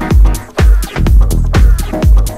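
Electronic dance track playing: a steady heavy low beat about twice a second, with crisp percussion strokes between the beats and no vocal.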